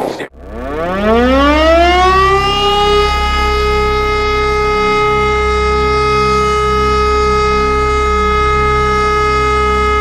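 Air-raid siren winding up, its pitch rising over the first few seconds and then holding a steady wail, with a low pulsing rumble underneath.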